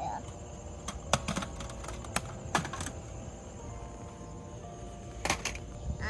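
Folding aluminium stove windscreen being unfolded and stood up around a portable gas stove, its thin hinged panels clicking and clattering in several sharp bursts, the last a double click about five seconds in.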